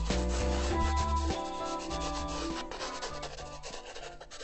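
Felt-tip pen tip scratching and rubbing on paper in many short strokes while drawing, under background music that fades out over the first few seconds.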